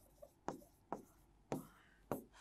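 Chalk writing on a blackboard: a few short, faint separate strokes as words are written and a line is ruled.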